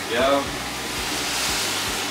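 Water pouring: a steady rushing splash that grows louder about a second in, as water is added to a cooking pot.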